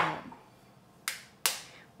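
Two sharp knocks about half a second apart: an egg tapped against the rim of a ceramic bowl to crack it.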